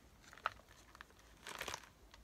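Faint crinkling of a plastic jelly bean bag being handled, with a small click about half a second in and a short rustle near the end.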